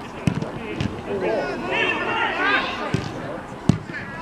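Footballers shouting to one another on the pitch, with a few dull thuds of a football being kicked. The loudest thud comes just before the end.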